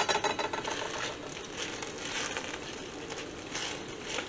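A utensil stirring shredded beef and broth in a plastic-lined slow cooker: soft, wet scraping and stirring. A metallic ring from a clank against the pot dies away at the start.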